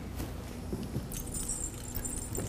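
Small metal bells jingling continuously, starting about a second in, over low room noise in a large church.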